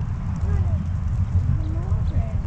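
Pushchair wheels rolling over a rough tarmac path: a steady, choppy low rumble.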